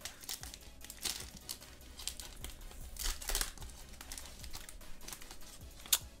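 Foil trading-card booster pack wrapper crinkling and tearing as it is pulled open, in separate rustles with the strongest about one second and three seconds in, and a sharp snap just before the end.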